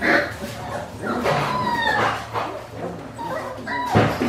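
Five-week-old Australian Shepherd puppies yipping and whining. A sharp yip comes at the start, a couple of whines drop in pitch in the middle, and short high yips come near the end.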